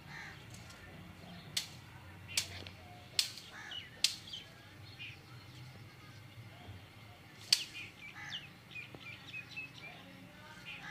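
Small birds chirping, a quick run of short high chirps near the end, with a few sharp clicks in the first half and one loud click past the middle, over a faint low hum.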